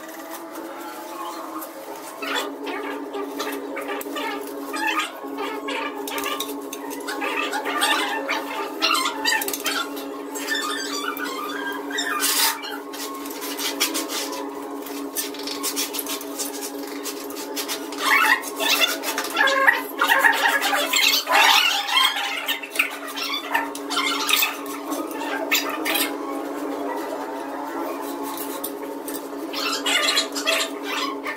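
Scratching and clicking from tile-setting work: a tape measure being handled and a floor tile being marked and scribed, with the loudest run of scraping strokes about two-thirds of the way through. A steady hum runs underneath.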